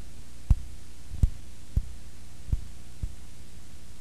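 A steady low hum with five sharp thumps, about half a second to a second apart, each fainter than the last.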